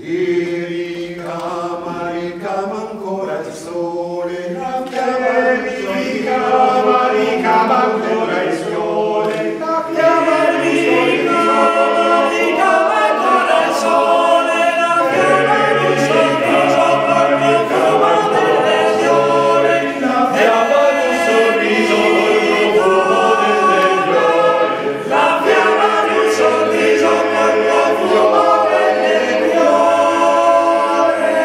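Male-voice choir singing in several parts in a reverberant stone church. The singing begins right at the start after a brief pause and grows louder over the first ten seconds or so, then holds full and steady.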